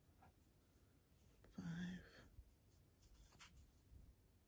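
Near silence with faint scratchy rustling of yarn being worked on a crochet hook. About a second and a half in comes one short, softly spoken word, a stitch being counted under the breath.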